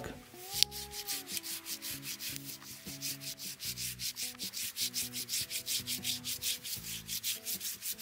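Hand pruning saw cutting through a live plum tree trunk in rapid, even back-and-forth strokes, several a second.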